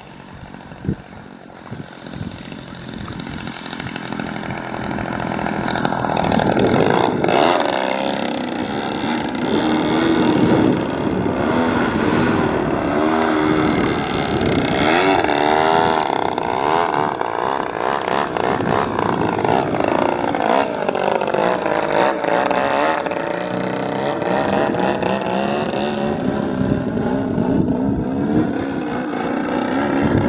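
Engine and propeller of an Extreme Flight Extra radio-controlled aerobatic plane in flight. It grows louder over the first several seconds, then holds, its pitch sweeping down and back up several times as the plane manoeuvres.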